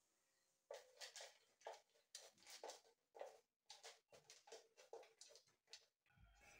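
Faint, irregular soft clicks and rustles of a plastic blender jar being handled and coarsely ground peanuts being moved into a small grinder cup, with the motor off.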